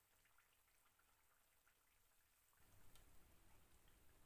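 Near silence, with faint crackling from poha vadai frying in shallow oil in a pan, coming in about two and a half seconds in.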